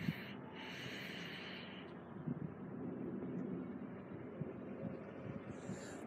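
A man drawing in smoke: a hissing inhale lasting about a second, then a fainter, steady breathy noise as the smoke is held and let out.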